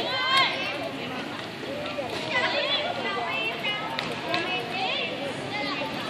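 People talking in high-pitched voices, with outdoor background noise.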